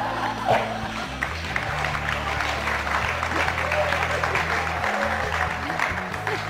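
Audience applauding, a dense patter of clapping that thins out near the end, over a steady background music track.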